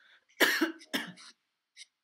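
A man coughing twice into his fist, a loud sharp cough about half a second in followed by a shorter one about a second in.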